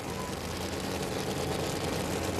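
Two top alcohol funny car engines idling at the drag strip's starting line: a steady low rumble under a haze of noise, with no revving.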